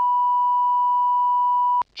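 Steady 1 kHz line-up test tone on a broadcast audio feed, one unbroken pure tone that cuts off abruptly near the end. It is the audio line-up for the committee room's sound channel, looping with a spoken channel ident.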